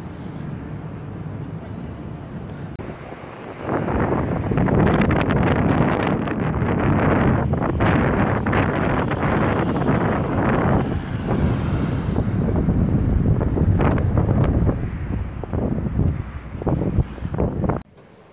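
Wind buffeting the microphone: a loud, gusty rumble that comes in about four seconds in, flutters in bursts toward the end and stops abruptly.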